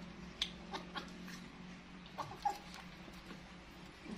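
Baby macaque eating a longan: scattered soft mouth clicks and smacks, with a short squeak about two and a half seconds in.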